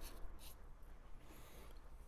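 Faint handling noise: a small glass bitters bottle is picked up and held over the mixing glass, with soft rubbing and a few light ticks.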